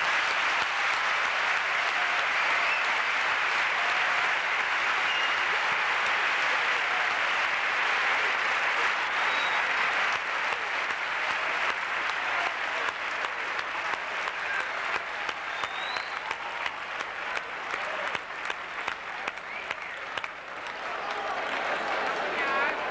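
A large audience in an auditorium applauding, a dense steady ovation for about ten seconds that then thins into scattered claps. Crowd voices rise near the end.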